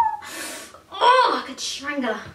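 A woman's voice without words: a breathy gasp, then short voiced sounds broken by another breath.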